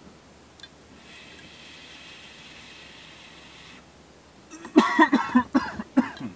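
A long, faint, steady hiss of a draw on a vape lasting about three seconds, then a fit of harsh coughing near the end, several coughs in quick succession. The coughing is a first-time vaper choking on the hit.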